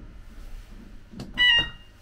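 A click, then a short, loud, high-pitched electronic beep lasting about a third of a second, from an exhibit's 'do not press' push-button panel.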